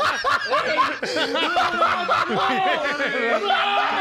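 A group of people laughing loudly together, many voices overlapping at once.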